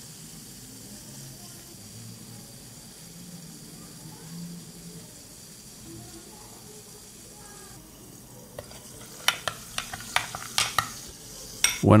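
Faint, steady crackling fizz of bubbles from citric acid reacting with baking soda in a glass of water. From about eight seconds in, a series of sharp clicks and knocks as the glass is set down on the desk and handled.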